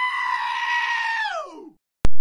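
A single high-pitched scream, held steady for over a second, then sliding down in pitch and dying away.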